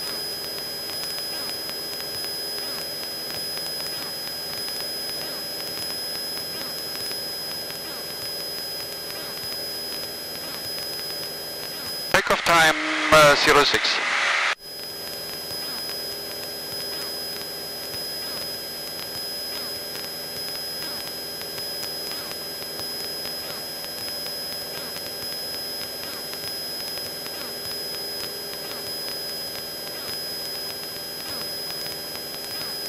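Steady drone of a Cessna 172's engine and propeller at climb power in the cockpit, with a thin high steady whine on top. A short spoken word cuts in about halfway through.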